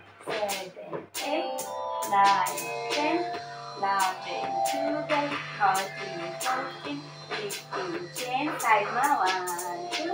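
A recorded song with a singing voice over sustained tones and a steady percussive beat.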